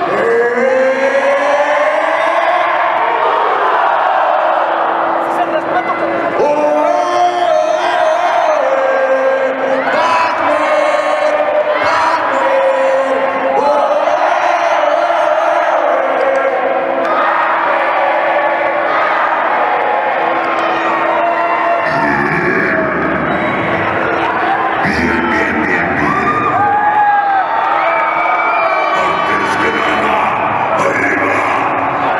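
Arena crowd cheering and shouting, with many voices yelling and whooping over one another.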